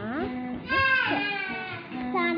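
A young girl's voice chanting in a sing-song way, with a loud, high, wavering note about two-thirds of a second in.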